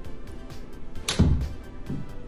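A golf iron strikes a ball off an indoor hitting mat about a second in: one sharp crack followed by a brief low thump, over background music.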